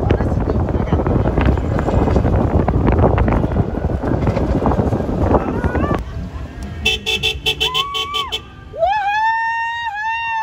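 Parade cars passing with noisy cheering for the first six seconds, then a quick run of short car-horn toots and a longer held note that swoops up at its start near the end.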